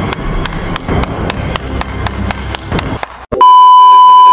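Editing transition: a steady ticking about four times a second over a low rumbling bed, then, about three and a half seconds in, a loud steady test-tone beep of the kind played with television colour bars.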